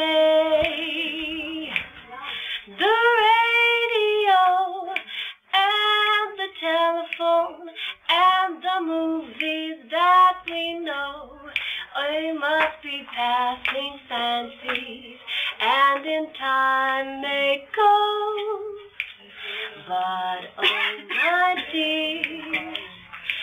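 A woman singing a jazz song solo with no accompaniment, holding some notes with a wavering vibrato.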